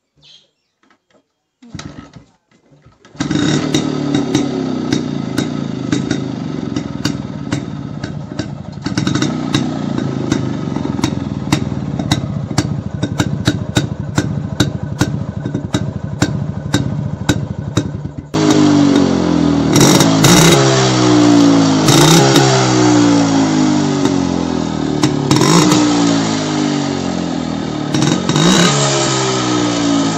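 1989 Yezdi CL II's single-cylinder two-stroke engine started on one kick, catching about three seconds in and settling into a fast, crackly idle. From about eighteen seconds in it is revved up and down again and again, louder.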